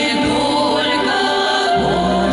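Female vocal group of four women singing a Russian song in close harmony into microphones, several voices holding and sliding between sustained notes.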